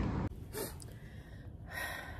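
A woman breathing out audibly twice, the second breath louder near the end. Before that, loud steady background noise cuts off abruptly a moment in.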